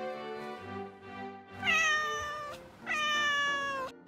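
Domestic cat meowing twice, two long calls of about a second each, the second sliding slightly down in pitch, over background music.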